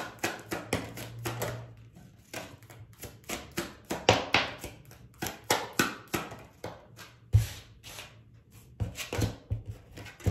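A deck of tarot cards being shuffled by hand: a quick, irregular run of short card snaps and slaps, about four a second, with a heavier knock about seven seconds in.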